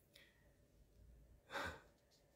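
Near silence in a small room, broken about one and a half seconds in by a single short breath out from a man between sentences.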